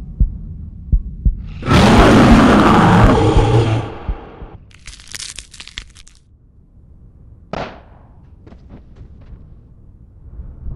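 Animated-film sound effects: two double heartbeat thumps, then a loud noisy rush lasting about two seconds, followed by shorter hissing bursts and a few faint clicks.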